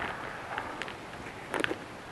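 Plastic wrapping rustling and crinkling as it is pulled off a drone's remote controller, with a sharper burst of crinkles about a second and a half in.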